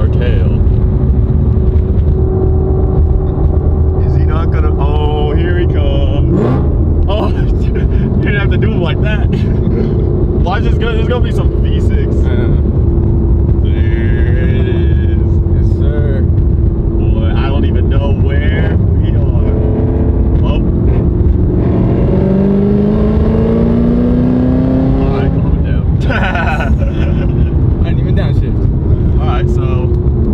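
Straight-piped supercharged V8 of a Hennessey Exorcist Camaro ZL1, heard from inside the cabin, droning steadily at cruise. A little past the middle its pitch rises for a few seconds as it accelerates, then settles back.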